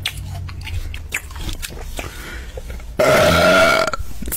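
Small clicks and rustles of fast food being handled and eaten, then about three seconds in a loud burp that lasts about a second.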